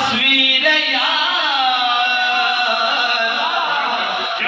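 A man singing a naat, an Urdu devotional song, into a microphone, in long held notes that glide up and down in pitch.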